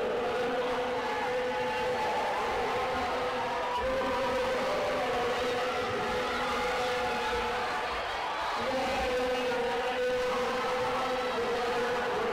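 A steady droning tone that wavers a little in pitch and breaks off briefly about eight and a half seconds in, over a constant background of hall noise.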